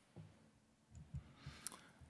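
Near silence, with a few soft thumps and one sharp click near the end: a gooseneck desk microphone being handled on a hearing-room table.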